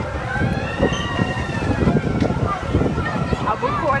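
Amusement park ride car running with a steady low rumble. Over it, in the first couple of seconds, comes a long wail that rises and then falls.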